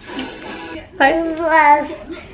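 A young child singing one drawn-out, wavering note for about a second, starting about a second in.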